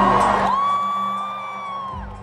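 Live band music getting quieter, under a steady low note, with a long high "woo" whoop from the crowd held for about a second and a half.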